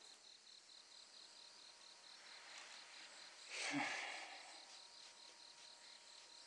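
Crickets chirping in a steady, pulsing trill. About three and a half seconds in, a person gives one short, breathy exhale.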